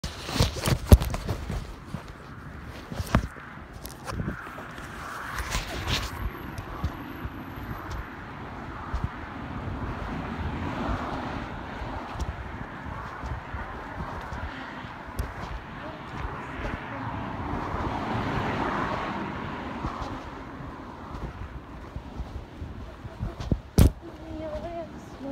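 Handling noise on a phone's microphone: sharp knocks and rubbing in the first six seconds, then muffled, indistinct sound that swells and fades, with another sharp knock just before the end.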